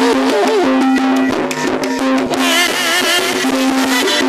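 Javanese gamelan ensemble playing a ladrang: bronze saron metallophones and bonang kettle gongs struck with mallets, ringing in a steady pattern over kendang drums. A woman's wavering singing voice sounds over the instruments.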